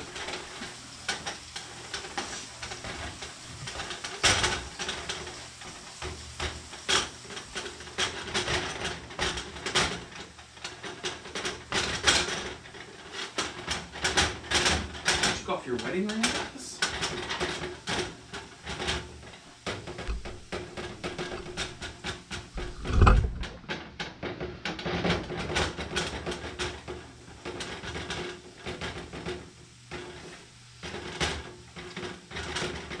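Hands pressing and stretching pizza dough on a metal pizza pan on a stovetop: scattered light clicks and knocks of the pan and hands, with one louder thump about three-quarters of the way through.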